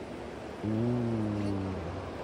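Kameng River's current rushing steadily past the bank, with a low drawn-out tone joining it about half a second in and lasting just over a second, its pitch rising slightly then falling.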